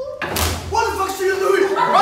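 A wooden door bangs once, sharply, about a fifth of a second in, followed by voices.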